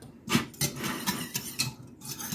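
A metal spoon and wire whisk clinking and scraping against a stainless steel saucepan as a spoonful of brown sugar goes into a thin barbecue sauce and is whisked in. The clicks are short and scattered.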